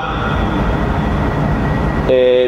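A steady, loud rushing noise with a thin, steady high whine in it, running evenly through the pause.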